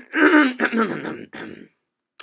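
A man clearing his throat, a rasping voiced sound lasting about a second and a half.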